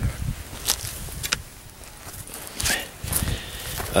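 Footsteps, a few irregular steps, over a low rumble from the handheld camera being carried.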